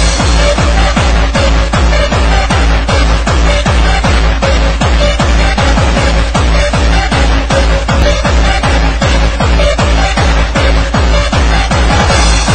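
Electronic dance music with a steady fast beat and heavy bass.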